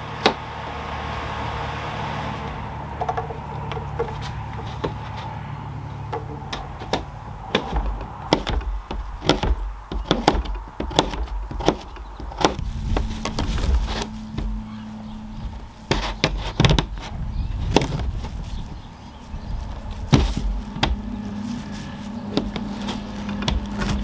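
Chef's knife slicing yellow squash and zucchini on a plastic cutting board: a run of irregular knocks as the blade strikes the board, coming faster and more often from a few seconds in.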